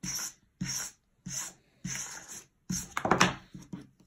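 A small hand brush drawn repeatedly through rooted alpaca fibre, about five scratchy strokes, the one near the end the loudest.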